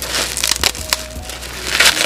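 Plastic bubble wrap crinkling and crackling in the hands as a package is unwrapped: a dense run of small clicks, with the loudest rustle near the end.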